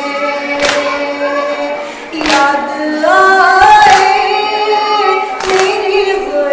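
A woman's voice chanting a Shia noha lament with other voices joining, slow held notes that glide between pitches. Four sharp hand strikes, spaced about a second and a half apart, keep the beat: matam, hands beaten on the chest in mourning.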